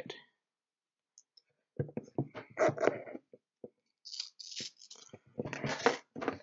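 Hook and loop fastener strap being fed and pulled through the slots of a perforated battery holder plate: scattered clicks, rustles and a short scratchy hiss of strap and plate being handled, starting after about a second and a half of quiet.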